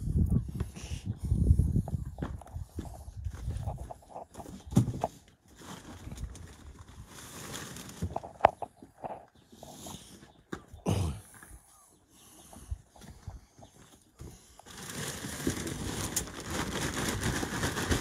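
Handling noises as wooden logs are carried and stacked on a pile: a few sharp knocks of wood, then plastic rustling close to the microphone near the end.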